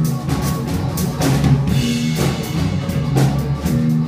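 Blues band playing live: electric guitar, electric bass and drum kit, with a steady drum beat.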